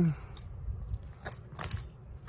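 A BMX bike rattling and clinking as it is ridden on concrete, with two sharper bursts of metallic jangling past the middle. A hummed note trails off at the very start.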